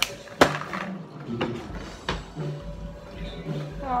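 A few sharp clicks and knocks of close handling, the loudest about half a second in, with music playing faintly underneath.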